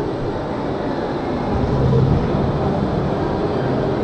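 Mack Rides spinning coaster car rolling slowly forward along the station track, a steady rumble with a low hum that swells about two seconds in.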